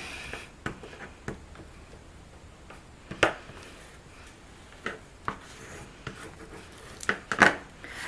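Paper and cardstock pages being handled and shifted into place on a craft mat: soft rustling with scattered light taps and clicks, the sharpest about three seconds in and a pair near the end.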